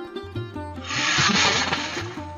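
Background sitar and tabla music, with a loud burst of hissing noise that swells about a second in and fades near the end.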